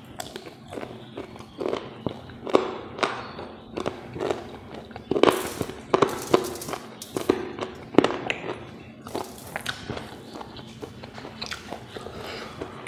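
Close-miked mouth sounds of eating fried pork and rice: irregular wet chewing, lip smacks and sharp clicks, with several louder smacks through the middle.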